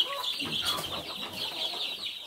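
A brood of ten-day-old chicks peeping all at once: many short, high-pitched cheeps overlapping in a steady chorus.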